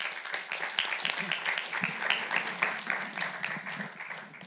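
Audience applauding: dense, overlapping hand claps that start suddenly and die down near the end.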